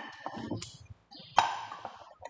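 Ceramic bowls knocking together as one is set into another, with a sharp, ringing clink about a second and a half in and lighter clatter before it.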